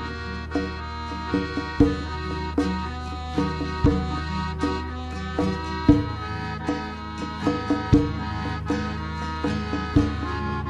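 Arbëresh folk dance music: a melody over a sustained drone, with a heavy beat about every two seconds and lighter beats between.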